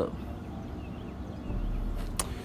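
Low steady hum from a Mercedes S500 (W220) as its Airmatic air suspension pumps the sagging car back up to ride height, growing slightly louder near the end.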